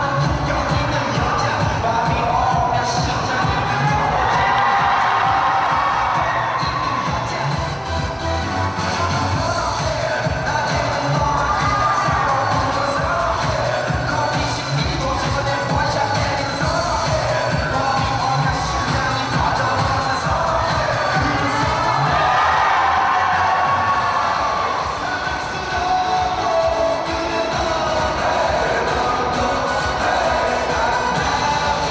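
Music with a melody and a steady beat playing over a loud crowd of students cheering and shouting.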